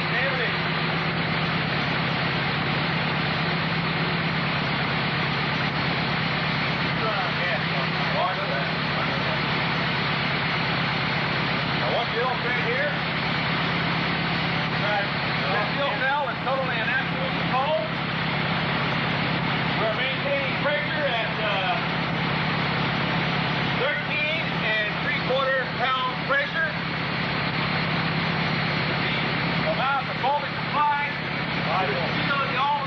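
Dune buggy's 1500-series aluminium engine running steadily at a constant speed, which its builder claims is burning hydrogen gas made from water in a water fuel cell. Indistinct voices talk over it at intervals.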